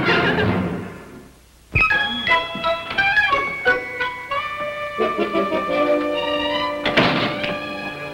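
Scene-change background music: the music fades out over the first second and a half, then after a brief near-silence a sudden thunk opens a new music cue of short melodic phrases.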